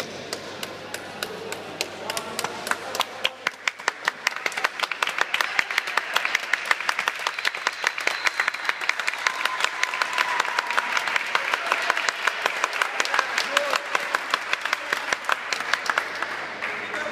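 Spectators clapping, picking up about two to three seconds in into a steady run of many claps a second.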